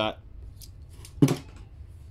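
Light clicks of a small diecast toy car being handled, then a single short, sharp sound a little past a second in.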